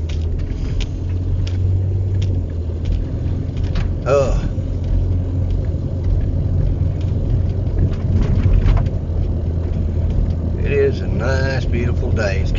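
Inside a minivan driving slowly: a steady low rumble of engine and road noise in the cabin. A short vocal sound comes about four seconds in, and a voice starts near the end.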